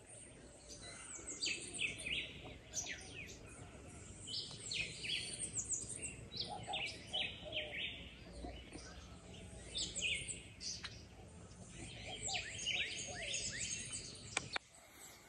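Many birds calling at once: a busy chorus of short chirps and quick downward-sweeping notes, over faint outdoor background noise.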